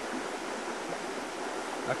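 Steady, even rushing background noise with no distinct events.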